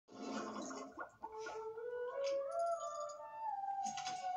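Cartoon bubble-transition sound effect, a bubbly gurgle, followed by a few held tones that step upward in pitch. It is played through a television's speaker and picked up in the room.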